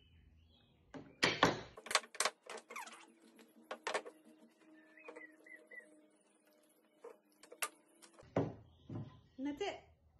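Sharp clicks and snaps of hand-tool work at a wooden workbench: a quick run of about eight in the first few seconds, one more near the end, then a couple of dull thuds.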